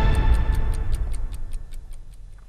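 Ticking clock sound effect, about five ticks a second, over the fading tail of a news programme's theme music.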